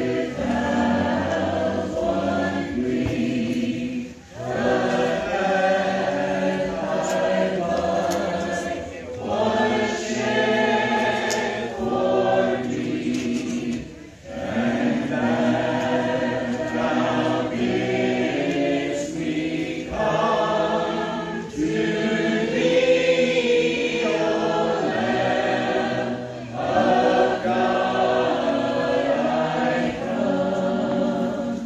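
A congregation of mixed voices singing a hymn together, unaccompanied in the Church of Christ a cappella manner. The singing comes in phrases of about five seconds, with short breaks for breath between them.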